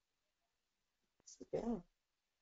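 Near silence, broken by a faint click and then a brief spoken syllable about a second and a half in.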